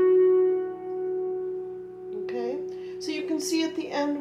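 Hammered dulcimer's last struck notes ringing on and slowly fading at the end of the hymn tune. A woman starts talking about halfway through.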